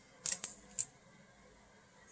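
A few light clicks and a brief scrape of rigid plastic card holders being handled and set down on a table, all within the first second.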